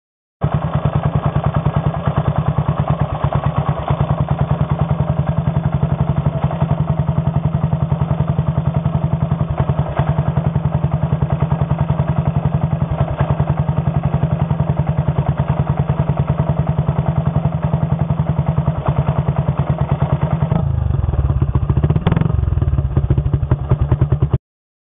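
1962 Triumph Tiger Cub's 200 cc single-cylinder four-stroke engine idling with a steady, rapid exhaust beat. Near the end the sound turns deeper and fuller, heard close to the exhaust pipe.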